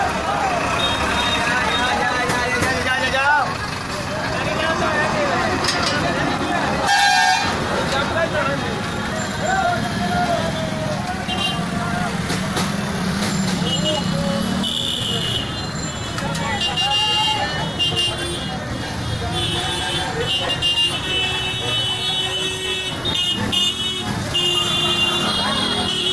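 Congested street traffic: engines of buses and cars idling and creeping, with people's voices all around and vehicle horns honking repeatedly in the second half.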